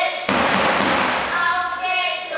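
A sudden heavy thump about a quarter second in, followed by about a second of fading hiss and a low rumble that rings on, heard in a large hall.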